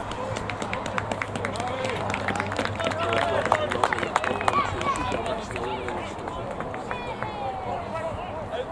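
Rugby players calling and shouting to one another on the pitch, several distant voices overlapping, with a run of quick sharp clicks through the first half.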